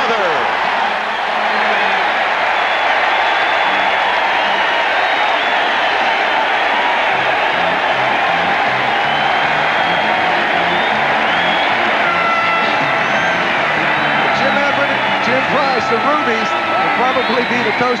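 Stadium crowd cheering a home-team touchdown, a loud, steady roar. A melody of stepped notes from stadium music plays underneath from a few seconds in.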